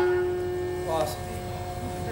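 A steady shruti drone, the accompaniment's held reference pitch, sounding on one unchanging note in a pause between the Bhagavata's sung phrases, with a brief pitched sound about a second in.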